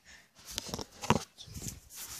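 Handling noise from a phone being swung around and gripped: a few knocks and rubbing on its body, the sharpest knock about a second in.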